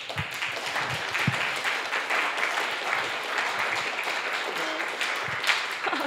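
Audience applauding: many hands clapping in a dense, steady patter that dies away near the end.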